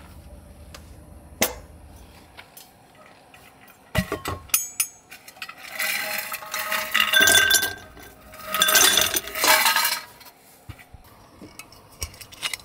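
Ice cubes tipped from a stainless-steel insulated jug into a glass mug, clattering and clinking against the glass in two runs of a couple of seconds each. A few single sharp knocks come earlier.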